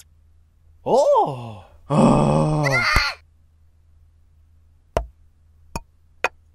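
Cartoon character voice effects: a short exclaiming vocal that rises then falls in pitch about a second in, then a longer groan falling in pitch. Two short sharp clicks follow near the end.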